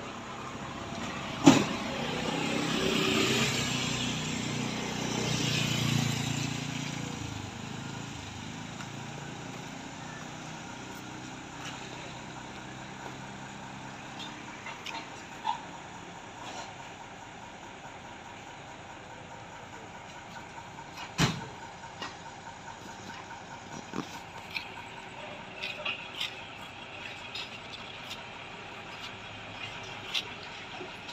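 Truck engine running, swelling up and falling away over the first several seconds, then a steady low hum. Sharp knocks come about a second and a half in and again around twenty-one seconds.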